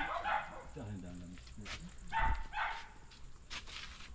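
Small dog yapping: two short, sharp barks a little after two seconds in, with a person's voice murmuring earlier.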